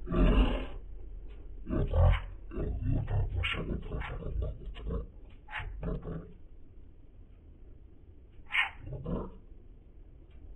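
A voice distorted by audio effects into growl-like sounds, coming in irregular short bursts for about six seconds, then two more bursts near the end.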